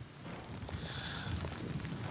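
Tropical-storm wind and rain on an outdoor field microphone: a steady hiss with uneven low rumbling from gusts buffeting the mic.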